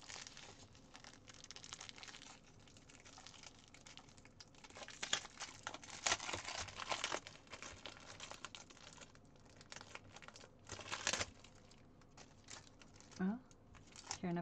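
Clear plastic packaging around a rolled diamond painting kit crinkling and rustling as hands struggle to open it, with louder crackles about five seconds in, around six to seven seconds, and again near eleven seconds.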